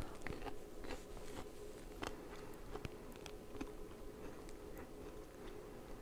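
A person biting into and chewing a piece of raw Scarlet Globe radish: faint, irregular crunches spread through the chewing.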